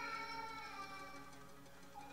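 Erhu playing one held bowed note that slides slowly down in pitch and fades toward the end, in a Chinese folk-instrument ensemble.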